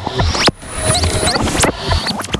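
Glitch-style electronic intro sting: rapid squeaky pitch sweeps rising and falling, stuttering clicks and low thuds, with a sudden cut-out about half a second in before it starts again.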